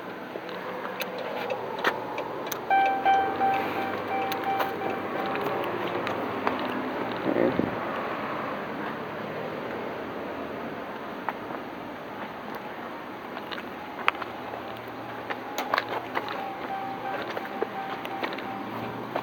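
A car's electronic warning tone, a steady single-pitched chime, sounds for about three seconds and returns faintly near the end. There is one short thump about seven and a half seconds in, over steady outdoor background noise.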